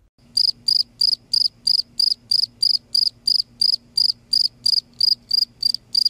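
A cricket chirping in an even rhythm, about three short high chirps a second, over a faint low hum.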